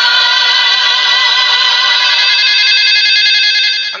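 Mobile phone ringtone going off: a loud, sustained electronic tone with a slight warble, which cuts off suddenly at the end.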